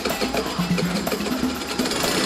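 Small motor scooter engine idling while it warms up, a rapid even putter, over background music with a bass line.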